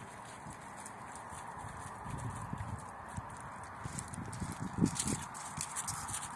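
A large dog's paws splashing through shallow water and then clattering on loose pebbles, the irregular steps growing louder as it comes closer.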